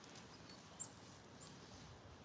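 Near silence with a few faint, short high chirps from a small bird, the clearest a little under a second in.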